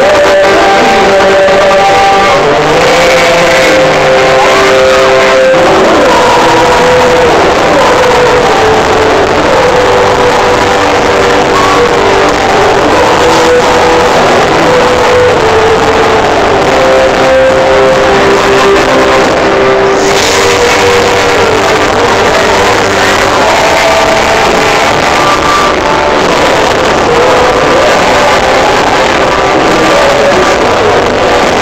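A pop-rock band playing a song live on stage, heard loud and steady from the audience, with sustained melodic lines over the full band.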